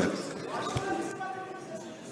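Faint voices murmuring in a large hall, with a single dull thump just under a second in.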